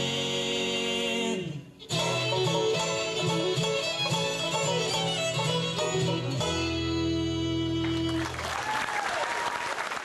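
Bluegrass band of fiddle, acoustic guitar, upright bass and banjo ending a song. A held vocal harmony breaks off, a quick instrumental tag follows, and it closes on a sustained final chord. Then the audience applauds.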